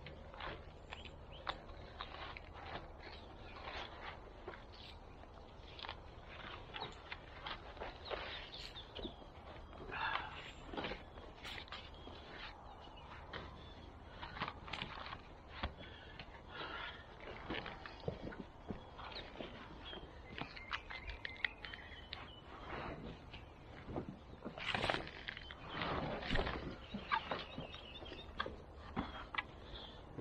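Irregular rustling, scraping and light knocks of a black plastic nursery pot being handled and worked off a plant's root ball, with a few shuffling steps on wood-chip mulch.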